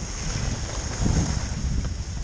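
Wind buffeting the microphone of a camera carried by a skier moving downhill, with a steady hiss from skis sliding over groomed snow.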